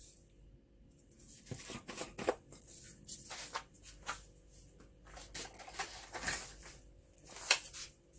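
Scattered short clicks, scrapes and rustles of a plastic sugar canister being handled and white sugar being spooned out of it, a little louder about two, six and seven and a half seconds in.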